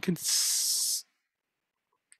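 A steady hiss lasting just under a second, right after a clipped word, cutting off suddenly.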